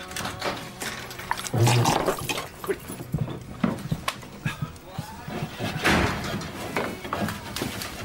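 Sitcom scene audio: a flurry of knocks, clatter and scuffling as people hurry about, with a short hurried exclamation of "Quick" and a few brief vocal sounds.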